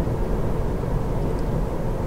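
Steady road and tyre rumble heard inside the cabin of a Kia e-Niro electric car driving along an asphalt road, with no engine note.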